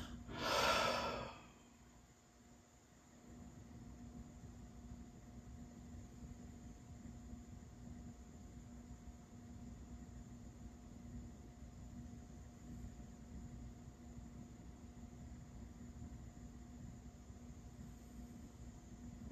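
A person's deep breath out, strong and brief, about a second in, while holding a seated yoga shoulder stretch. After it, only a faint steady hum of the room.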